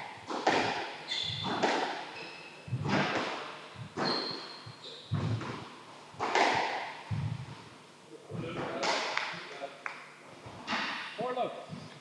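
Squash rally in an echoing court: the ball is cracked off rackets and smacks off the walls and floor in a run of sharp, ringing hits about a second apart. A few short high squeaks come from shoes on the wooden court floor.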